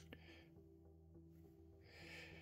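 Near silence: faint room tone with a steady low hum and one small click right at the start.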